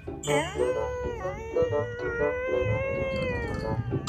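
Beagle howling: one long call that dips in pitch about a second in, then holds and fades near the end, over background music.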